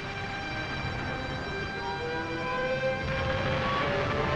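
Aircraft engines drone over a low rumble, their pitch rising slowly in the second half, mixed with sustained held notes of a film score.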